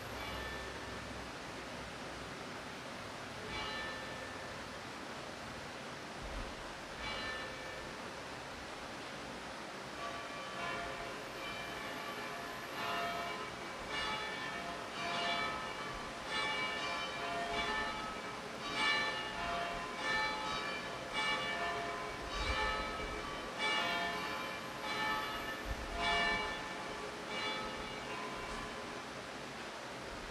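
Church bells ringing: a few single strikes at first, then a quicker run of strikes on several pitches from about ten seconds in, each strike ringing on as it fades.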